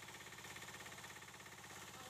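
Small engine-driven water pump running steadily with an even pulse, with water gushing from its outlet and splashing on concrete: the pump is primed and delivering a full flow.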